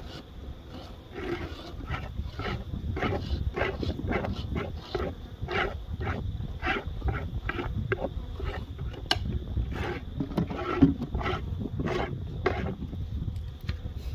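Honeybees buzzing around opened hives, with many short buzzes of single bees passing close to the microphone over a steady low rumble.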